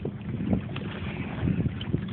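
Wind rumbling on the microphone by open water, with a few faint knocks or splashes.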